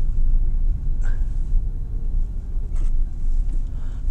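Steady low rumble of a 2006 Porsche Cayman S (987), with its 3.4-litre flat-six, heard from inside the cabin while it drives slowly on a snowy road, with engine and tyre noise mixed. Two faint short knocks come about a second in and near the end.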